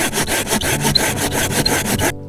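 Folding hand saw cutting through a dry dead branch in quick, even back-and-forth rasping strokes.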